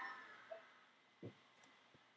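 Near silence: room tone, with one faint short knock about a second in.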